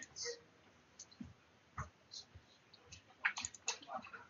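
Faint, scattered clicks of a computer mouse, a few single clicks spread out and then a quicker run of clicks near the end.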